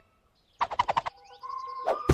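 Cartoon sound effects: after a moment of silence, a quick run of about six short clicking chirps, then a thin steady whistle-like tone cut across by a sharp hit near the end.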